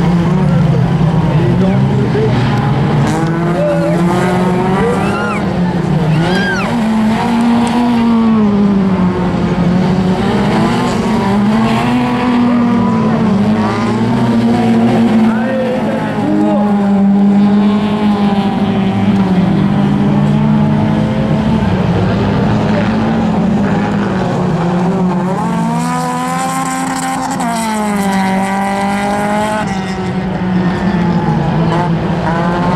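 Several racing car engines running at once on a dirt track, each one revving up and dropping back again and again as the cars accelerate and brake through the turns. Near the end a rougher, hissier car sound comes in for a few seconds.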